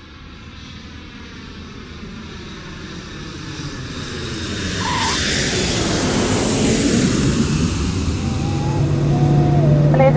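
Jet airliner coming in low to land, its engine noise growing steadily louder over the first five seconds and then staying loud.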